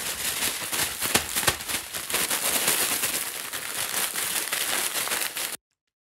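Paper bag crinkling and dried fennel seed heads crackling inside it as they are bashed and crushed to knock the seeds off, a dense run of crackles and sharp clicks. It cuts off suddenly near the end.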